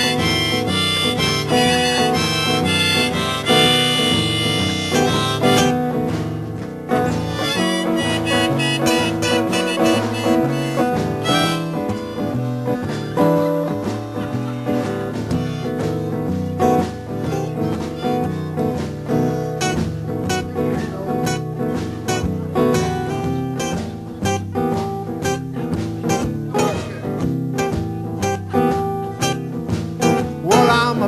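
Instrumental break in a live acoustic song: a harmonica plays held and bent notes over steadily strummed acoustic guitars.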